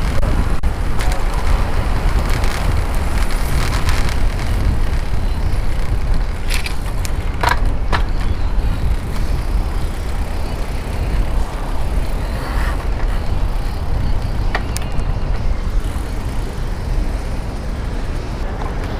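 Strong wind buffeting the microphone of a helmet-mounted camera on a moving bicycle, a steady low rumble over road and traffic noise, with a few brief high squeaks along the way.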